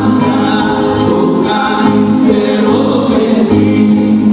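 Live rembetiko music: a band of bouzoukis and other plucked strings playing, with singing over it.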